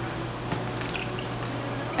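Water poured from a plastic filter pitcher into a tumbler, a steady pour throughout.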